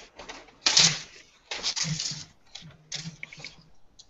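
Typing on a computer keyboard in three short bursts of key clicks, picked up by a headset microphone on a video call.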